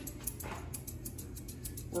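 Grooming shears snipping through a cocker spaniel's head coat: a quick, steady run of light metallic snips.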